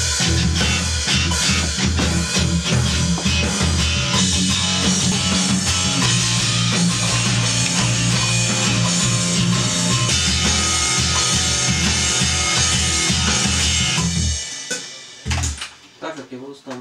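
Heavy rock music with distorted electric guitar and a drum kit playing a driving beat, cutting off about fourteen seconds in.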